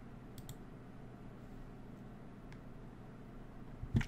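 A few faint computer clicks while code is being edited, two in quick succession about half a second in and one more in the middle, over a low steady hum.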